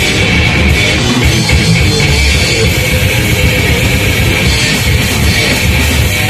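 A live heavy metal band playing, loud and without a break: electric guitar, bass guitar and drum kit.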